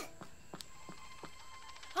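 A quiet lull: a few faint, unevenly spaced soft clicks over a faint steady high background tone.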